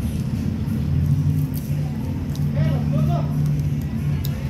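A steady low drone of engine-like running, with faint voices in the background.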